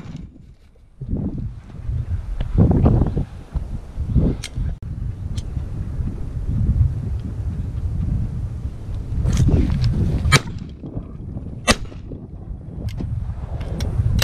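Wind rumbling on the microphone outdoors, with a handful of sharp clicks or knocks scattered through it, two louder cracks in the second half.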